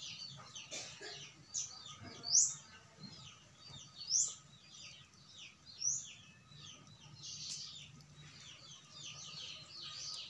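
Small birds chirping quickly and continuously, with three louder rising whistled notes about two seconds apart.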